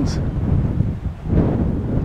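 Wind buffeting the microphone: a heavy low rumble that dips about a second in, then picks up again in gusts.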